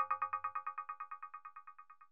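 Tail of a short electronic channel-ident jingle: one synth chord repeats rapidly, about ten times a second, like an echo, and fades away steadily.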